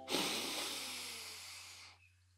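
A person taking one long, deep breath in, a breathy hiss that fades away over about two seconds.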